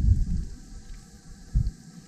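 Low, irregular rumbling buffets on the microphone, loudest at the start and again in a short burst about one and a half seconds in.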